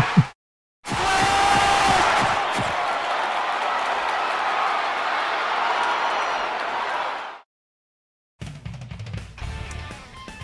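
Soundtrack of a sports promo: a loud, steady wash of music and noise that cuts off sharply about seven seconds in. After a second of silence, quieter guitar music starts near the end.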